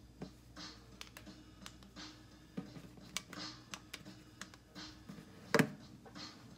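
Fingers tapping and clicking on a computer keyboard: a run of irregular key clicks with a louder knock near the end.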